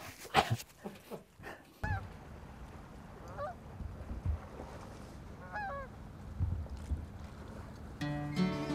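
A man's voice briefly, then geese honking three times, a couple of seconds apart, over a low steady rumble.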